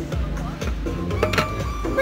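Background music, with voices talking over it.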